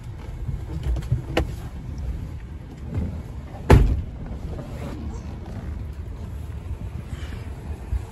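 A pickup truck's cab door shuts with a single heavy thump about four seconds in, over a low steady rumble and a few lighter knocks.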